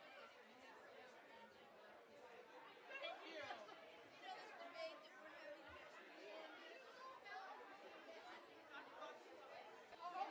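Faint, indistinct chatter of several people talking over one another in a large room, with no single voice standing out.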